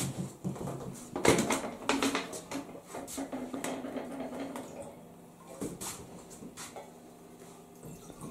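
Metal cup knocking and scraping against a flour sieve over a large aluminium pot as flour is scooped and sifted in, a busy run of clatters in the first half that thins out to a few knocks later.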